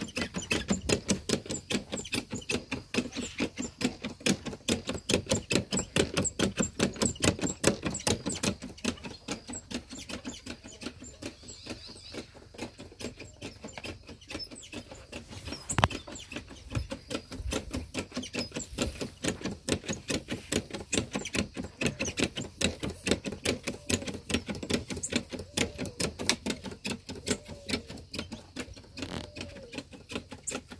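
Lever pump of a manual backpack sprayer being worked steadily, squeaking and clicking several strokes a second, with the spray hissing as tick killer is sprayed onto a calf. One louder click about halfway through.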